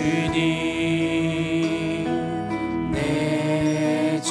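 Contemporary worship song: several voices singing long held notes over acoustic guitar, with a change of notes about three seconds in.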